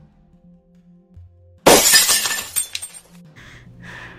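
Glass shattering about one and a half seconds in: a sudden loud crash followed by about a second of tinkling pieces, over soft background music.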